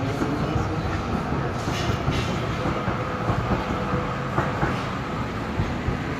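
Steady low rumbling background noise with a faint continuous hum and a few light knocks about four and a half seconds in: the ambient noise of a large open market shed.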